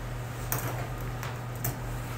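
Grooming shears snipping the curly hair on a dog's cheek: a few sharp metallic snips, the loudest about half a second in and near the end, over a steady low hum.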